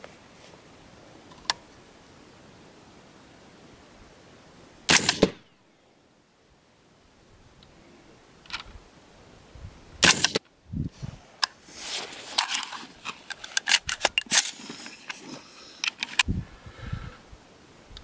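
Suppressed FN15 rifle in .300 Blackout, fitted with a Gemtech ONE suppressor, firing 220-grain subsonic rounds: two short sharp reports about five seconds apart, the first about five seconds in. A run of light clicks and knocks follows in the last seconds.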